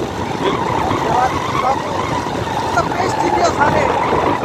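Motorcycle riding along a desert track: a steady rush of wind buffeting the microphone over the engine and tyre noise.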